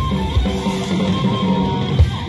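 Rock band playing live: electric guitars over a steady drumbeat.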